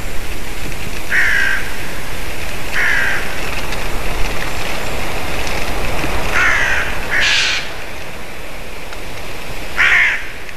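Crows cawing at intervals: about six harsh calls a second or more apart, with a brighter, harsher call about seven seconds in, over a steady background hiss.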